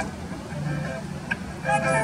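A quiet lull in a live song, with a low steady hum under faint accompaniment; a woman's singing voice comes back in near the end.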